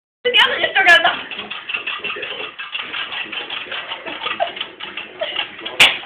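Indistinct voices talking, with a few sharp clicks, the loudest just before the end.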